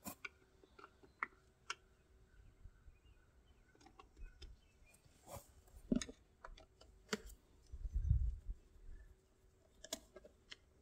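Faint, scattered clicks and light taps of a screwdriver working at the plastic housing of an electric trailer tongue jack, with a duller low thump about eight seconds in.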